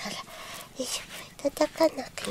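A rubber grooming brush rubbing through a cat's fur, with a few short, soft voice sounds in the second half, several close together.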